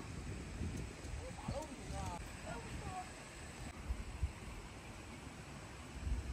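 Wind rumbling on the microphone, with faint voices speaking briefly from about one and a half to three seconds in.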